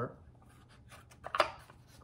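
Wooden puzzle box being worked open by hand: a few light clicks and a short scrape of wood on wood a little past the middle as its sliding panels are shifted to reach the secret drawer. Otherwise quiet.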